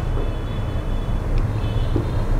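Marker writing on a whiteboard, giving faint short squeaks over a steady low background rumble.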